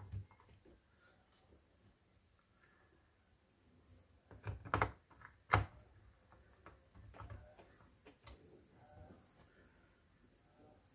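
Small Phillips screwdriver driving a short screw into a laptop's bottom cover: faint ticks and scrapes, with a few louder clicks and knocks about four to six seconds in.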